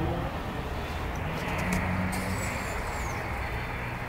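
Steady low rumble of city street traffic, with a few faint clicks.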